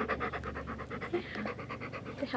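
A large dog panting rapidly and evenly, about ten breaths a second, right into a handheld microphone.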